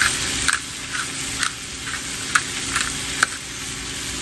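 Potatoes frying in melted butter in a skillet: a steady sizzle with scattered sharp crackling pops.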